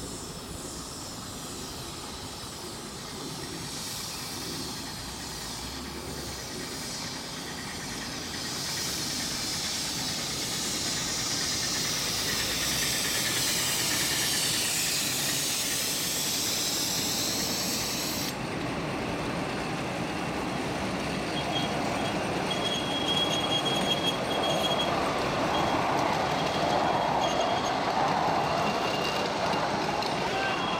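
A live-steam ride-on miniature train passing: a steam hiss builds and then stops abruptly about halfway through, followed by the louder rolling of the passenger coaches over the rails, with thin squeals from the wheels on the curve.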